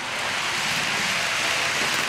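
A model ICE high-speed train passing close by: a rushing noise that swells to a peak about a second in, then eases slightly.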